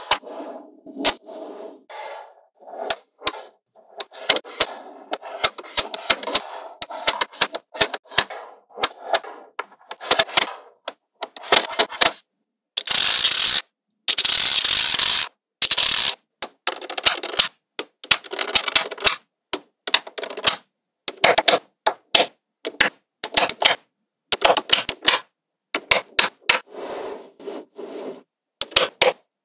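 Small metal magnetic balls clicking and snapping against one another as strips and rows are pressed together by hand, in rapid, irregular clicks and short rattles. About halfway through comes a few seconds of continuous scraping rattle as a clear plastic plate is pushed across the balls.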